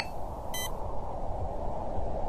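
A short electronic beep about half a second in, over a steady low hiss and rumble.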